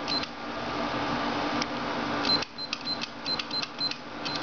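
Electronic access-control keypad beeping at each key press as a passcode is entered: a quick run of short, high beeps in the second half, over a steady background hiss and hum.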